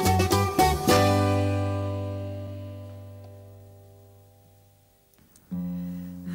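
Bouzouki-led plucked-string ensemble playing the last bars of a Greek island ballos. It lands on a final chord about a second in, which rings out and fades away over about four seconds. Near the end a new held chord comes in softly.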